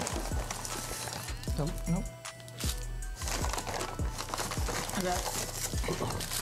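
Paper burger wrappers and fast-food packaging crinkling and rustling as they are unwrapped and handled, with scattered light clicks and taps, over background music.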